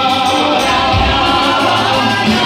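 A congregation singing a worship song together, many voices on long held notes.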